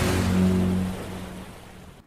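Low, steady droning rumble from an anime action scene's soundtrack, fading out over the second half.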